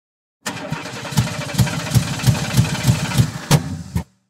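An engine starting up and running with a regular low throb about three times a second, then cutting off sharply.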